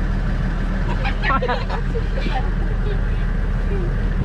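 A vehicle's engine idling steadily with a low, even hum, heard from inside the cab with the door open. Children's voices come through faintly over it.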